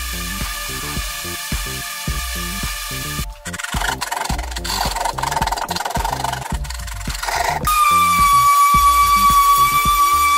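Background music throughout. From about three seconds in, a rough rasping comes through as a hand rasp is worked over the foam-and-fiberglass motorcycle body. Near the end a steady high-pitched whine sets in.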